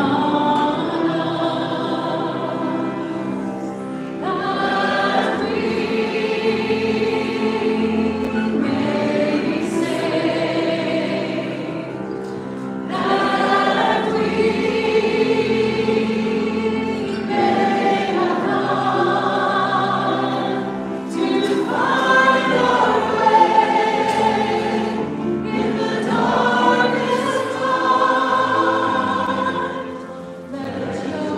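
A slow worship song sung by a guitarist-singer and a singing congregation to acoustic guitar, in phrases of a few seconds with short breaks between them.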